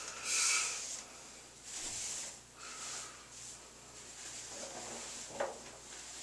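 Soft rustling of curled synthetic yarn locs as hands fluff and rearrange them, with a few breathy puffs of about half a second to a second each, and a small click about five seconds in.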